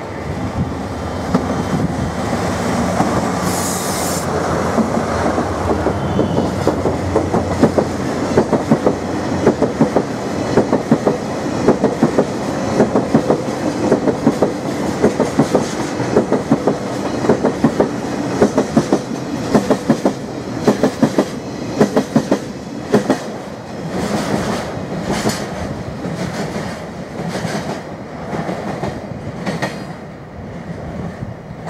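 Diesel freight train, a DD51 leading a pair of DF200 locomotives, running through a station while slowing: first the locomotives' engine drone as they pass, then a long train of tank wagons whose wheels clatter rhythmically over the rail joints, fading as the train draws away near the end.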